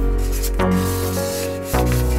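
Background music with held chords that change twice. Over it, a dry rubbing hiss of a cardboard strip of stickers being slid and handled, which stops shortly before the end.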